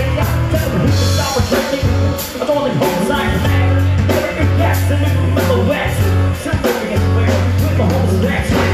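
Live rock band playing: a male lead vocalist sings over electric guitars, bass, keyboard and a drum kit, with long held bass notes under a steady drum beat.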